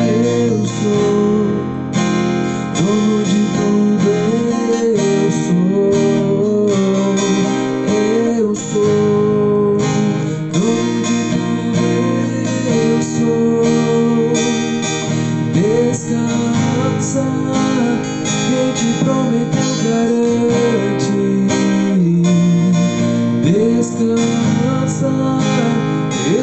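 Acoustic guitar, capoed at the first fret, strummed continuously in a steady down-down-up-up-down-down-up-down-up pattern through an Em–D–Bm–G–A4 progression.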